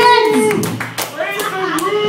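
A vocalist's voice through the microphone and PA, drawn out and wavering in pitch, with a few sharp claps.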